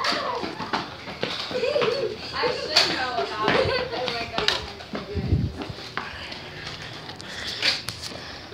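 Children's voices and calls at play, not clearly made out, with scattered clicks and knocks and a low thud about five seconds in.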